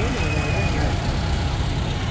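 Allis-Chalmers D17 tractor engine running at low speed as the tractor drives past, a steady low rumble.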